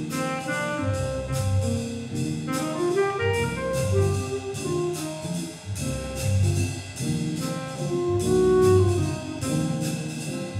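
Jazz big band playing: saxophones and brass over drum kit and bass, with cymbal strokes keeping a steady beat.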